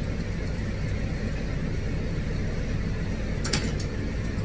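A steady low machine hum, with one short crisp snip of grooming shears near the end.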